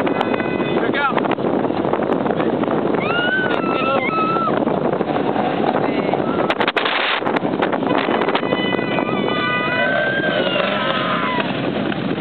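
Autocross race cars' engines heard from trackside, their pitch rising and falling as they rev and change gear, over steady engine noise.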